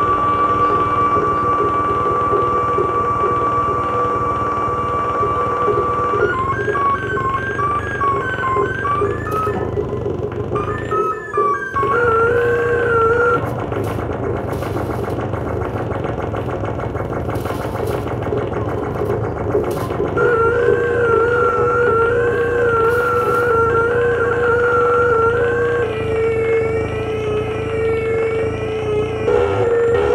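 Live electronic noise music: a steady held tone, then, about six seconds in, warbling siren-like tones that wobble up and down over a dense low rumble, with a brief dropout around eleven seconds in.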